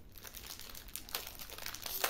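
Packaging crinkling and rustling as it is handled: a scatter of small crackles, with a sharper one at the end.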